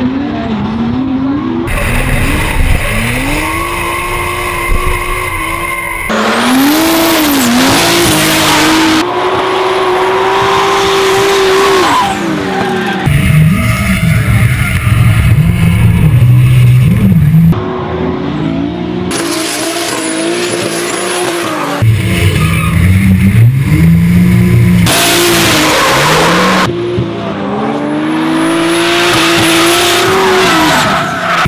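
Drift cars, a Mazda RX-7 and a BMW E21, sliding under power: engines revving up and down as the throttle is worked, with tyre squeal. The sound changes abruptly every few seconds where shots are cut together.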